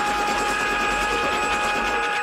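Film soundtrack of continuous machine-gun fire, a dense rapid rattle, under a sustained high musical chord that holds steady.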